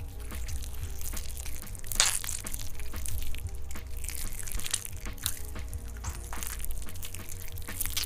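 Hands squishing and spreading a wet, gooey clay mixture: a continuous run of irregular squelches and crackles, with a few louder ones along the way.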